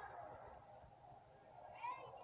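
Near silence: room tone, with one faint, short pitched sound near the end.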